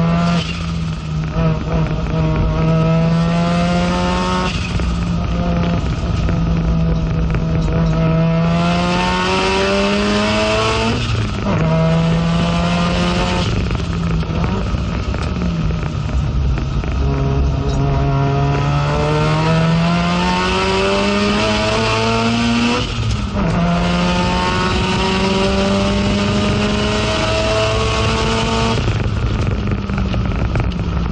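Mazda FD3S RX-7 race car's twin-rotor rotary engine heard from inside the cabin under hard acceleration, the revs climbing in long sweeps and dropping sharply at each upshift. About halfway through the revs fall away for a few seconds as the driver slows, then climb again through the gears.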